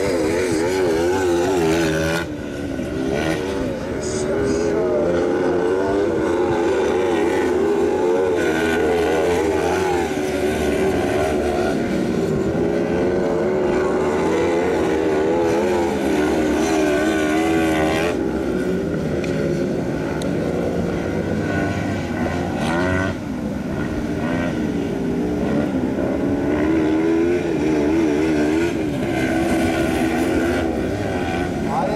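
Engines of 500 cc kart cross buggies racing on a dirt track, their pitch rising and falling continually as they rev through the corners.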